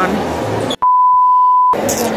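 A steady, single-pitch bleep tone about a second long, cut in over otherwise muted sound, like a censor bleep. Before it, voices chatter at the counter.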